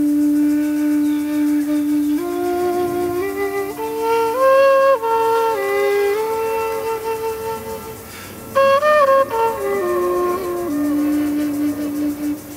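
End-blown bamboo flute with a shakuhachi-style scale playing a scale run. It holds the low root note with all holes closed, steps up note by note and back down, breaks briefly, then steps down again from a high note to end on the held root.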